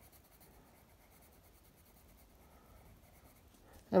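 Faint scratching of a watercolour pencil colouring on paper.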